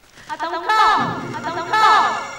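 A woman's anguished cry, heard twice about a second apart, each falling in pitch and echoing.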